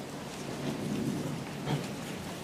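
Steady low rumbling room noise with a soft knock near the end.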